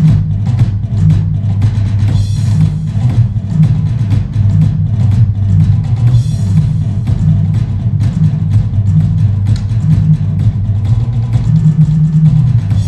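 A drum kit played fast and busy, with dense stroke after stroke and crash cymbals about two seconds in and again about six seconds in, over a sustained low bass part that shifts in pitch, as from a backing track.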